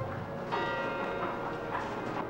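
A church bell struck about half a second in, ringing on with many steady overlapping tones.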